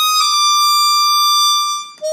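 Harmonica playing a melody into a microphone: after a brief note it holds one long, steady high note for about a second and a half, which breaks off just before the end.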